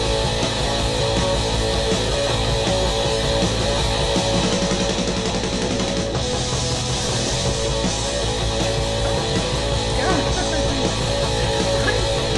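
Live rock concert recording: a band playing a rock and roll number on electric guitar, bass guitar and drums, loud and steady throughout.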